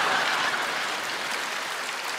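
Audience applauding after a joke, loudest at the start and slowly dying away.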